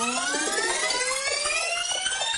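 A siren-like tone winding up: a rich, many-pitched sound gliding steadily upward, the climb slowing as it rises.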